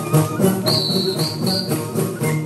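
Live folk dance music: plucked lutes and hand-clapping to a steady beat of about three strokes a second. A high piping note sounds three times in quick succession about halfway through.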